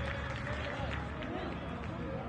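Men's voices talking and calling out during play at a football match, over the steady background noise of an empty stadium.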